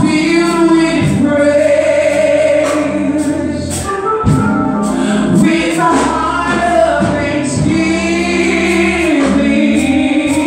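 A woman singing a gospel song through a microphone over instrumental accompaniment, with long held bass notes that change every second or two.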